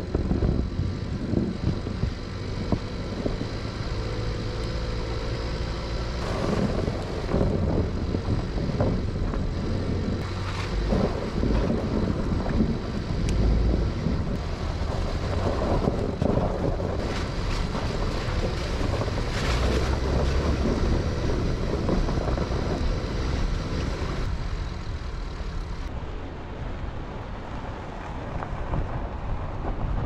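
Pickup truck driving on a rough forest road: a steady engine and tyre rumble with frequent small jolts and rattles, and wind buffeting the microphone.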